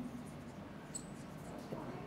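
Dry-erase marker writing on a whiteboard: faint scratchy strokes, with a short high-pitched squeak about a second in.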